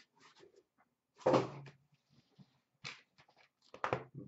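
Cardboard boxes of trading cards being handled: a dull knock with a short scrape about a second in, then a lighter knock and a few small clicks near the end.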